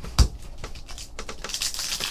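Trading cards handled by hand: a single thump a moment in, then quick clicks and slides of cards against each other, turning into a denser rustle near the end.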